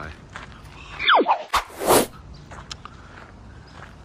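A sharp whistle-like tone falling quickly from high to low about a second in, followed by a click and a short burst of hiss, the loudest sounds here.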